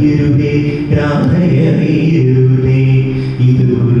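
A man singing a Malayalam Krishna devotional song in a chant-like style, holding long steady notes with gliding turns between them.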